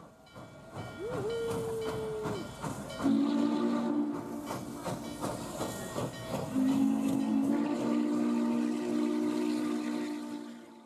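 Steam locomotive running with steam hissing. A short single-note whistle sounds about a second in, then two long steam-whistle blasts of several notes at once, the second starting a little past halfway.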